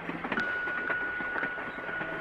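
A train running along a rail track: a steady rattling noise with scattered clicks from the wheels on the rails. A steady high tone starts shortly after the beginning and is held to the end.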